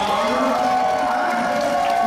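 Men's voices through stage microphones holding one long note together.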